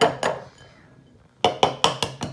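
A raw egg tapped against the rim of a bowl to crack its shell: sharp clinks, two at the start, then four more in quick succession near the end, about five a second.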